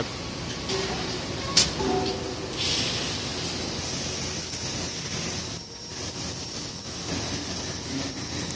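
TIG welding arc on an automatic linear seam welder, a steady high hiss as the torch welds a tank's sheet-metal seam, with one sharp click about one and a half seconds in.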